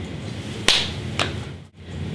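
Two sharp slap-like cracks about half a second apart, the first louder with a short hiss trailing after it, over faint room noise; the sound drops out briefly near the end.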